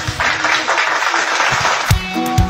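A burst of recorded applause, an even clapping noise that stops abruptly after about two seconds, with a low thump just as it ends.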